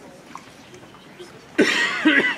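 Faint audience room noise, then one loud, harsh cough near the end.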